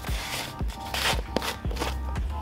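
Background music with a steady beat, under the scraping rub of a plastic screw lid being twisted off a shampoo tub, loudest about a second in.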